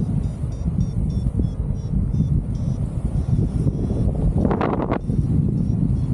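Wind rushing over the microphone in flight, with a paragliding variometer beeping in quick short pulses, the sign of the glider climbing in lift. The beeps run through the first half and come back near the end, and a brief burst of noise comes about four and a half seconds in.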